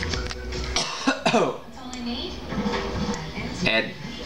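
A man coughing and clearing his throat, with music and speech in the background.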